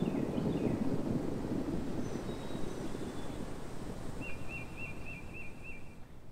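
Waves washing over a rocky shoreline with wind, slowly fading down. A bird calls a few short notes early on and, in the last two seconds, a quick series of about six short chirps.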